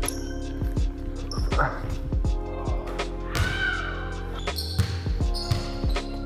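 Basketball being dribbled and bounced on a hardwood court: a string of short, sharp thuds at uneven spacing, with a brief falling squeak about three and a half seconds in, over steady background music.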